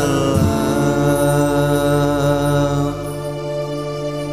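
A man's voice singing a sholawat, an Islamic devotional song, over musical accompaniment. He holds one long note, and the level drops about three seconds in.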